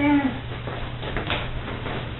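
A dog gives one short whine right at the start, dipping slightly in pitch. After it come faint scattered ticks and scuffs over a steady low hum.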